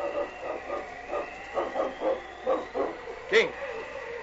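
A husky, as a radio-drama dog sound effect, gives a quick string of short whines and yips, two or three a second.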